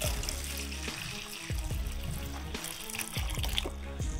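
Water poured from a plastic tub through a metal tea strainer into a plastic bucket, a steady trickling splash, under background music with a repeating bass beat.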